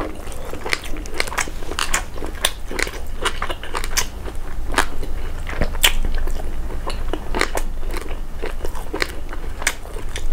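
Close-miked chewing of a mouthful of food from a bowl of peanut soup: irregular wet mouth clicks and smacks, several a second, over a low steady hum.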